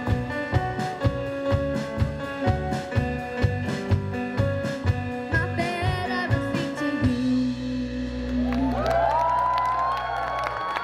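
Live youth band, with drum kit, bass guitar, guitar and keyboard and a boy singing, playing the end of a song over a steady drum beat. About seven seconds in the band stops on one long held final chord, and the crowd starts cheering near the end.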